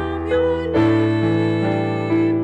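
Keyboard music for the responsorial psalm: held chords, with a change to a new, louder chord about three quarters of a second in.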